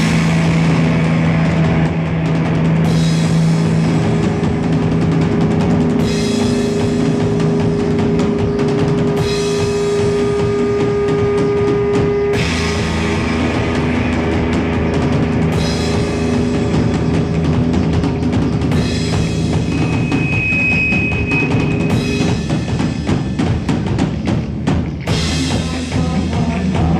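Live instrumental rock from electric guitar and drum kit: the drums play a steady, driving pattern under long, droning held guitar notes.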